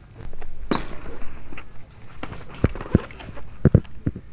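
A cardboard product box being handled close to a phone microphone: rubbing and scraping, then several sharp knocks in the second half, two quick pairs near the end.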